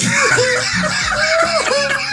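Several people laughing together loudly in a run of short rising-and-falling bursts.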